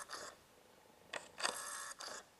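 Faint whirring of a camera's autofocus motor in two short spells, with a small tick between them, as the lens hunts and fails to lock focus.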